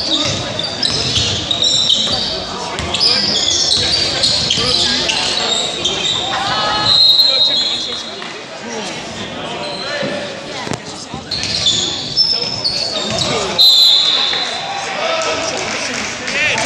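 Basketball being played on a hardwood gym floor: sneakers squeaking in many short, high chirps and a ball bouncing, with voices calling out.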